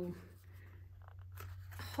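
Small cardboard gift box being handled and its lid flap prised open: faint scrapes and light clicks that grow a little louder near the end, over a low steady hum.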